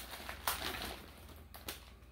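Faint rustling of a plastic bag and packaging being handled, with a couple of sharper crinkles, one about half a second in and one near the end.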